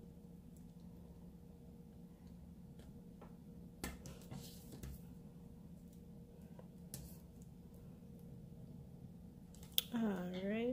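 Faint handling of paper and washi tape on a desk: a few light taps and a short rustle about four seconds in, over a steady low hum.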